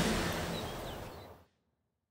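Soundtrack fading out: an even, hiss-like tail with a couple of faint high chirps, dying away to silence about a second and a half in.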